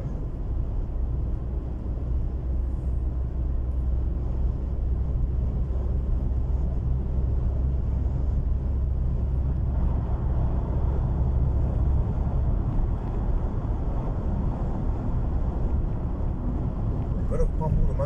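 Steady low rumble of a car driving on the road, engine and tyre noise heard from inside the cabin.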